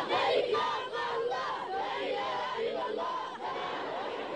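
A large crowd of mourners shouting and calling out together, many voices overlapping, loudest in the first second or so.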